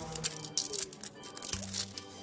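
Clear plastic wrapping crinkling and tearing in irregular little clicks as it is peeled off a plastic slime tub, over quiet background music.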